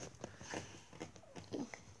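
Quiet room with a few faint clicks and rustles of a hand-held camera being moved, and a brief soft vocal sound about one and a half seconds in.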